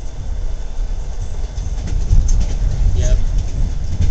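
Passenger railway carriage running on the rails, a continuous low rumble heard from inside the compartment. It grows louder about halfway through as the carriage shakes.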